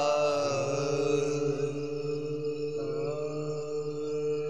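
Soft backing vocal drone of a noha: voices humming a held, chant-like chord under the pause in the lead singing, sliding to new notes twice.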